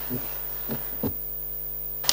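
Steady low electrical mains hum on the audio system. About a second in it turns buzzier, with a row of higher overtones, and there are a few faint short sounds in the first second.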